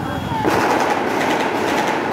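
Street sound with voices, cut through about half a second in by a loud, rapid rattling burst of automatic gunfire that runs on for more than a second.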